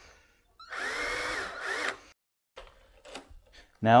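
Cordless drill with a Phillips bit driving a screw into a deadbolt's interior plate: one run of about a second and a half starting shortly in, its motor whine rising and then easing off as the screw is run in short of tight. A few faint clicks follow.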